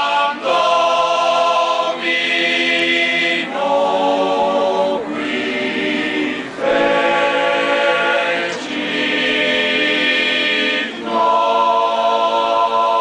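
Male choir singing a Latin Christmas carol unaccompanied, in long held chords that change every second or two, with short breaks between phrases.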